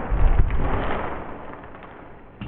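Heavy couch cushions tumbling down: a loud, dull thump with rustling, fading over the next second and a half.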